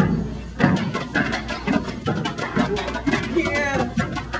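Stepping: hand claps, slaps on the body and foot stomps struck several times a second in an uneven, syncopated rhythm, with shouted voices in between.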